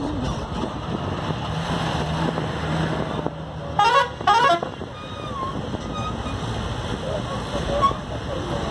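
Two short vehicle-horn blasts in quick succession about four seconds in, over steady road and engine noise heard from inside a moving vehicle.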